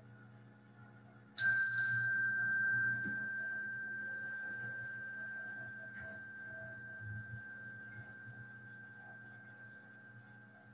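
A meditation bell struck once about one and a half seconds in, ringing as one clear, high tone that slowly fades away; its brighter upper overtones die out within about a second.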